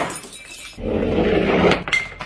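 A metal ball rolling down a chipboard halfpipe with a low rumble, then striking glass bottles near the end with sharp clinks of glass and a brief ringing tone.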